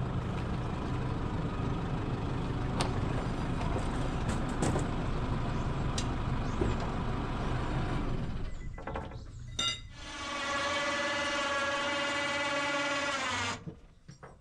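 An electric winch motor runs with a steady whine for about three and a half seconds near the end and cuts off abruptly, raising the sheep-scanning trailer's body on its leaf-spring suspension. Before it, a steady low mechanical rumble with a few clicks and knocks.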